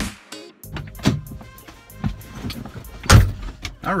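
A person climbing into a car's driver's seat, with small knocks and rustles, then the car door shut with one loud slam about three seconds in.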